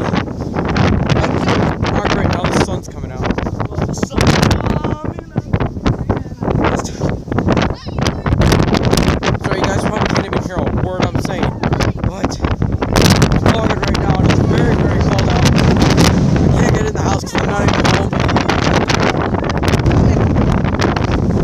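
Wind blowing across a phone's microphone, loud and uneven, dropping off briefly between gusts.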